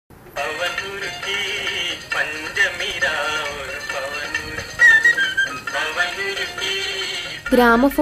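A song with a singing voice playing from a vinyl record on a record player, starting abruptly just after the needle goes down. A talking voice comes in over it near the end.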